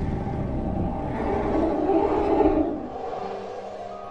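Trailer score of sustained ambient tones under a low, noisy swell of sound design that builds to a peak about two and a half seconds in and then drops away.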